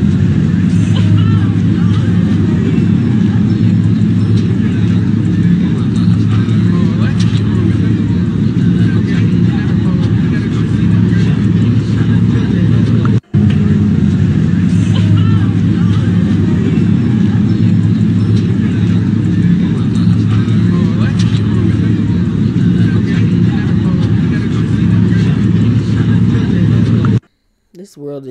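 Phone-recorded audio of a crowded outdoor gathering, played back from a social-media reel: voices in a crowd over a loud, heavy low rumble. The sound cuts out for a moment about halfway through, as the short clip starts over.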